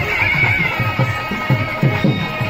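South Indian temple procession music: a loud double-reed pipe, a nadaswaram, plays a bending, ornamented melody over quick, steady strokes of a thavil drum.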